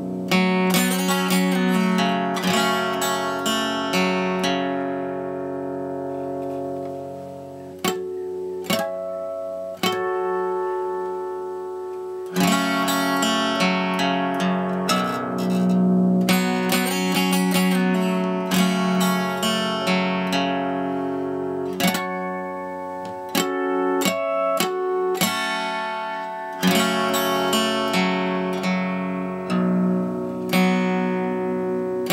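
Solo acoustic guitar playing an unaccompanied instrumental passage: chords are strummed and picked and left to ring out and fade, broken by a few sharp single strums.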